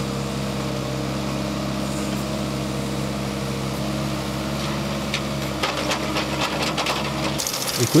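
Small tracked excavator's diesel engine running at a steady speed as it digs, with a few short knocks late on. The sound changes abruptly just before the end.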